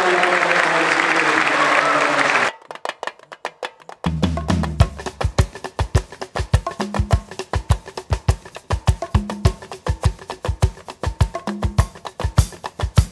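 Crowd applause with voices mixed in for about two and a half seconds, then cut off by percussive background music. The music has rapid, evenly spaced wood-block clicks, and a deep drum beat joins at about four seconds.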